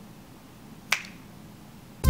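A single finger snap about a second in, over faint room tone.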